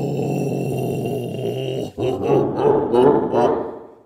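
A man's long, steady low groan held for about two seconds, then breaking into shorter wavering vocal sounds that fade out near the end.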